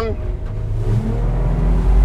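Yamaha F300 V6 four-stroke outboard accelerating as the throttle is fed on gradually, its note rising in pitch and steadily getting louder as the boat climbs onto the plane.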